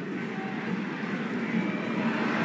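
Steady stadium crowd noise from a football match broadcast, an even wash of many voices that swells slightly toward the end.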